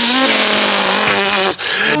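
A loud, sustained cartoon sound effect: a wash of noise with a steady pitched note under it, after a short laugh, breaking off about a second and a half in.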